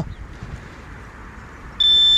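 Handheld metal-detecting pinpointer giving a steady high-pitched alarm tone, starting near the end and loud, signalling metal close to its tip in the dig hole. Before it, only faint low rumble.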